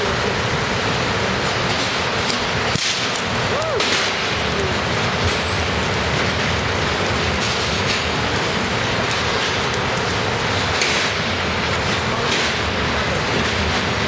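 A sharp bang about three seconds in, as a charged acrylic block, holding trapped electrons at about 2.5 million volts, discharges all at once when a grounded metal point is tapped into it with a hammer. Scattered faint snaps follow from small residual discharges, all over a steady loud background noise.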